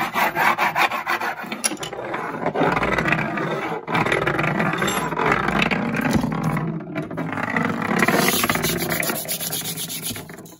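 Fast, continuous rubbing and scratching across a wooden tabletop, a dense rasp with brief breaks about four and seven seconds in.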